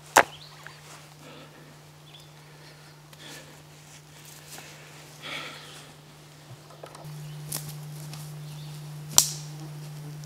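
Sharp clicks, one just after the start and a louder one about nine seconds in, over a steady low hum that gets louder about seven seconds in.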